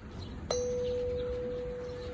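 A hanging metal tube chime, a bell set in a granite frame, struck once with a small mallet about half a second in, then ringing on as one pure, steady tone that fades only slowly.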